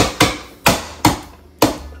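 Manual push-down vegetable chopper, its lid slammed down to force tomato through the blade grid: five sharp, loud clacks at an uneven pace.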